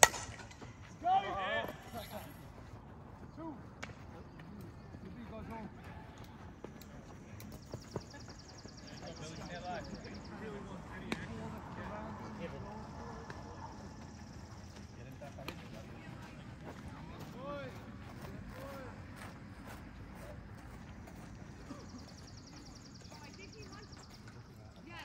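A softball bat striking a pitched ball with one sharp crack, followed about a second later by a brief shout from players.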